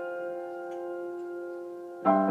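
A piano chord sustained and slowly dying away, its notes ringing steadily with no new strike until the very end.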